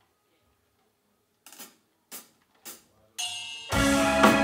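A drummer's count-in: three sharp taps about half a second apart after a near-silent pause, then a sustained chord rings out and a metal band comes in loudly with drums and cymbals near the end.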